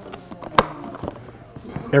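Hard-plastic handling clicks from a DeWalt TSTAK box latched onto a DeWalt DCV585 dust extractor as the stack is gripped and lifted by its handle, with one sharp click about half a second in and a few lighter clicks and rustle.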